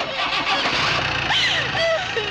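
An SUV's engine running as it pulls away, with a low rumble building about half a second in. A wailing voice and film music play over it.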